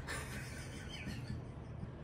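Dry-erase marker writing on a whiteboard: faint scratching strokes with a short squeak about a second in, over a steady low room hum.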